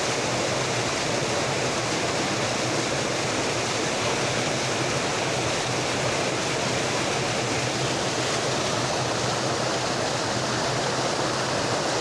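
A water jet rushing and splashing onto the paddles of a traditional water mill's horizontal water wheel as it turns: a steady, unbroken rush of water.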